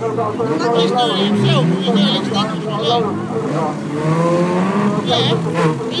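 Several racing cars' engines revving hard at once, their notes repeatedly rising and falling.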